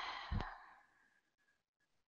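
A person's exasperated sigh: a breathy exhale that fades out within about half a second, with a small click near its end.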